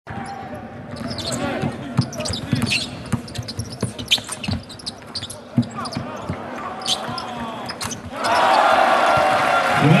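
Basketball being dribbled on a hardwood court, with sneakers squeaking, over crowd noise in the arena. About eight seconds in, the crowd breaks into loud, sustained cheering, the reaction to a made three-pointer.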